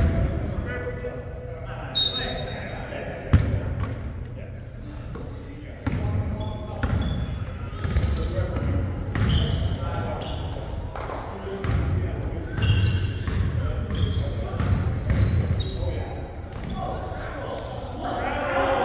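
Basketball game in a large gym: a basketball bouncing and hitting on a hardwood floor and backboard with sharp echoing bangs, the loudest in the first few seconds, along with short high squeaks of sneakers on the court and players calling out.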